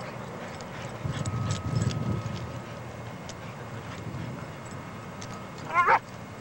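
Two dogs play-fighting: a low growl about a second in, then one short, high bark just before the end, the loudest sound.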